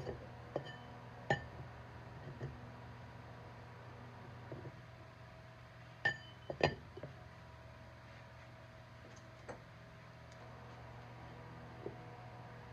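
Scattered clinks and knocks of a small steel go-kart wheel rim being handled and turned over on a workbench, a few of them ringing briefly like struck metal. The loudest come about a second in and in a cluster around six to seven seconds in, over a faint steady hum.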